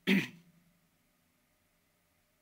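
A man clearing his throat once, a short sharp burst at the very start.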